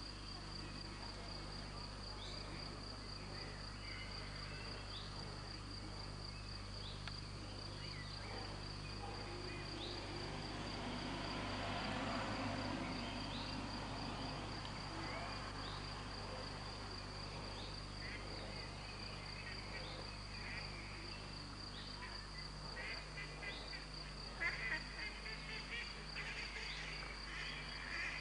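Crickets chirping in a steady, evenly pulsing high trill over a low, steady hum. Scattered short chirps join in, growing busier near the end.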